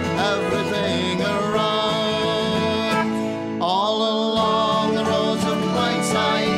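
Folk band playing an instrumental passage between verses: acoustic guitar and banjo strumming under a melody from whistle and hammered dulcimer, with one note sliding upward about halfway through.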